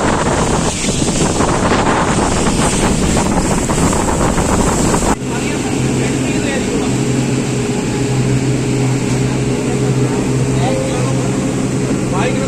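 Motorboat under way at speed: wind buffeting the microphone and water rushing past the hull over the engine. About five seconds in the sound cuts, and a steady low engine drone comes through under the wind and water.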